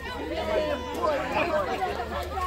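Several people chatting at once, their voices overlapping at a moderate level.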